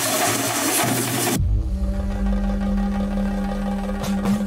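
A drum troupe playing fast and loud on large rope-laced drums with metal clatter, cut off abruptly about a second and a half in. A steady, deep electronic drone on one held note follows.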